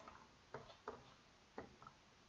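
A few faint computer keyboard keystrokes, about four or five short clicks spaced unevenly, as a short word is typed.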